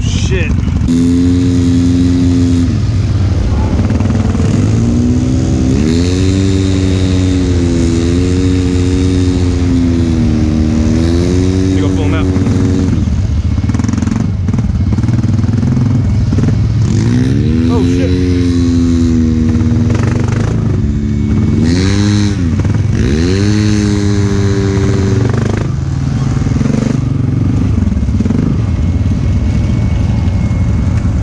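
ATV engine, a Honda Rubicon, running under load while towing a stuck side-by-side out of the mud on a strap, revving up and down in several surges and easing off toward the end.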